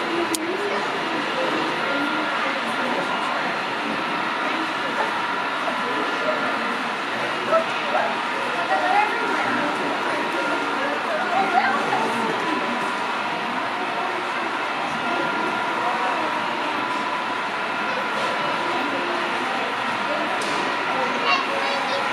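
Indistinct background chatter of many people talking in an indoor hall, over a steady hum.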